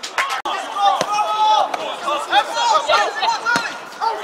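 Several men shouting and cheering over one another on a football pitch just after a goal goes in, with a few sharp knocks or claps among the voices.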